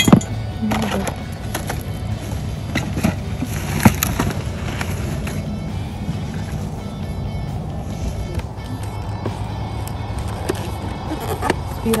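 Objects being handled and rummaged in a box of discarded Christmas decorations: a few sharp knocks and clacks, the loudest about four seconds in, over a steady background with music.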